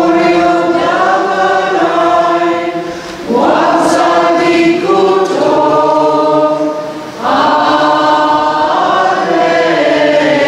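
Voices singing a slow liturgical hymn together in long held phrases, with short pauses for breath about three seconds and seven seconds in.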